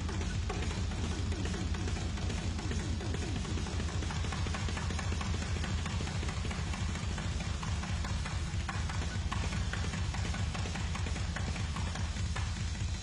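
Live hard-rock concert sound: a low steady drone under a constant hiss, with many short falling pitch glides through it.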